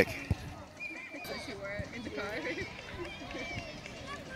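Distant calls and chatter from spectators and young players at a children's soccer game, with one sharp knock about a third of a second in.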